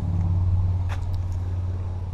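A steady low hum from a running motor, with a few faint clicks about a second in.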